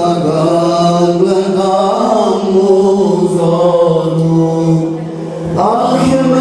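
A male choir chants an Islamic devotional song (ilahi) into microphones, amplified through a PA, with a low note held steadily beneath the melody. The voices ease off briefly near the end, then a new phrase rises.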